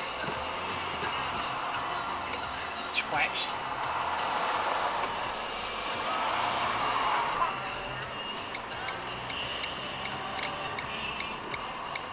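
Car cabin noise from the dashcam car as it pulls away from a junction and picks up speed, with a radio playing faintly underneath. A run of light, evenly spaced ticks comes in the second half.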